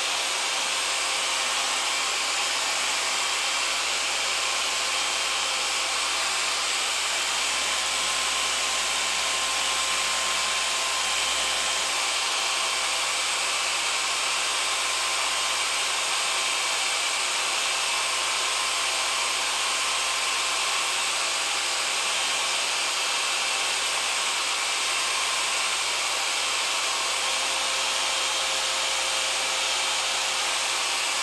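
Three-inch polishing machine running steadily, its yellow foam pad working a tail-light lens: a constant whir with a faint whine that holds the same level throughout.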